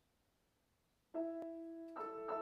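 Boston GP-178 grand piano: after about a second of near silence, a chord is struck and rings on, with a further note played near the end.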